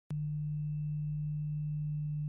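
Steady low electrical hum with a string of higher overtones, opening with a sharp click as the sound begins.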